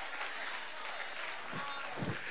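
A congregation applauding steadily, with faint voices mixed in.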